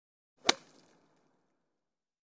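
A single sharp hit sound effect, a short crack with a brief fading tail, about half a second in, used as a slide-transition effect.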